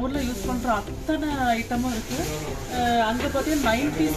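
A woman talking, with a steady hiss behind her voice.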